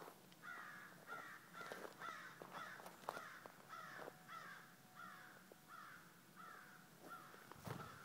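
Faint bird calls in a steady run of over a dozen, about two a second, each a short note falling in pitch.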